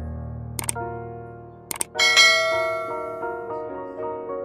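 Subscribe-button sound effects over soft piano background music: two quick pairs of mouse clicks, then a bright notification-bell ding about halfway through that rings out and fades.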